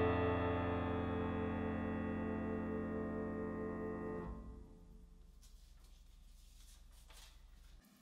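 The final chord of a piece on a Fazioli grand piano rings and slowly fades for about four seconds, then cuts off suddenly as it is released. Faint rustles of the sheet music being handled on the stand follow.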